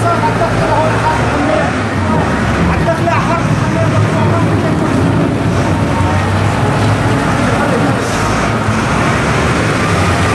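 A motor vehicle engine running steadily, with people talking over it.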